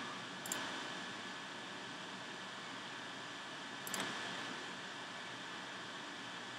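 Two sharp computer mouse clicks, one about half a second in and one about four seconds in, over a steady background hiss.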